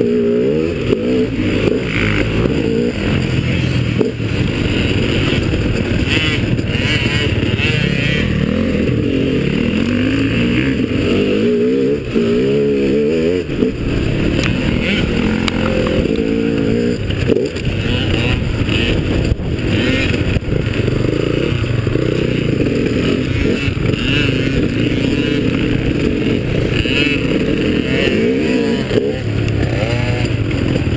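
Dirt bike engine heard close up from on board while riding, its pitch climbing and dropping again and again as the throttle is opened and closed.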